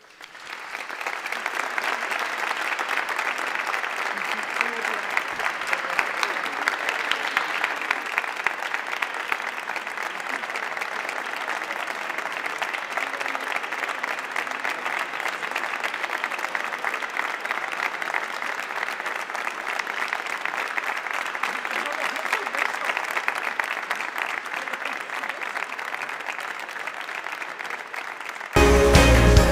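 A large congregation applauding in a cathedral, a long, steady round of clapping that swells up within the first second.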